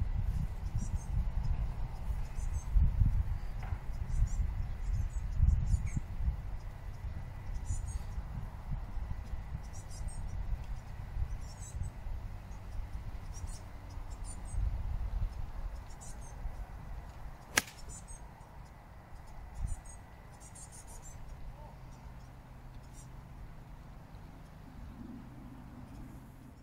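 A single sharp crack of a 9-iron striking a golf ball from the rough, about two-thirds of the way through. Before it, a low rumble that fades; faint high chirping throughout.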